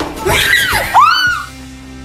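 A person's high-pitched shriek, sliding up and down in pitch, over background music; it cuts off about a second and a half in, leaving a held music chord.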